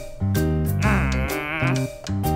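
Cartoon background music with a stepping bass line, over which a character gives one wavering, bleat-like vocal sound lasting about a second in the middle.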